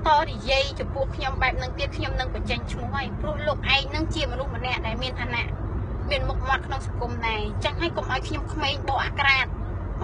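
A woman talking inside a car's cabin, over a steady low rumble from the car.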